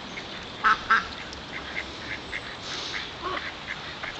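Call duck quacking: two short, loud quacks about a second in, then a string of faint, soft calls.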